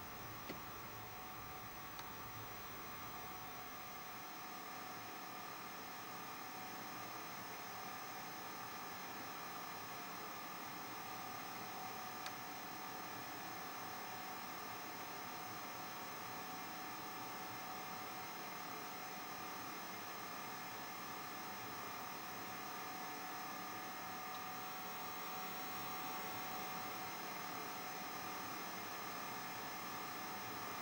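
Faint, steady electrical hum of room equipment, made up of several steady whining tones over a low hiss, with a few tiny clicks.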